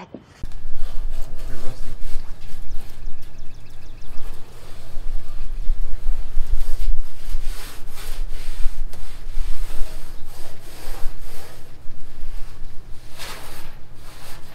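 Irregular rubbing, scraping and knocking as a windshield is worked out of the body of a 1962 Willys wagon, over a steady low hum.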